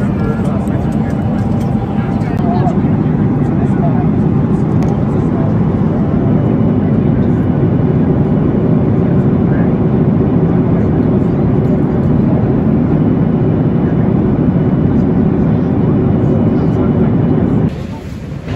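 Steady cabin noise of a jet airliner in flight, heard inside the cabin: a loud, even rumble of engines and rushing air. It drops away abruptly just before the end.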